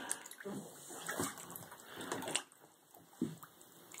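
Bath water splashing and sloshing in a tub as an otter swims and grabs at a hand, in a run of short splashes that go quieter about three seconds in.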